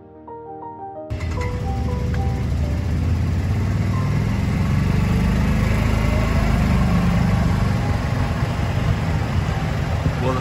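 Piano music, then an abrupt cut about a second in to a golf cart driving along a cart path: a steady low rumble of motor and tyres. A few faint piano notes linger briefly over it.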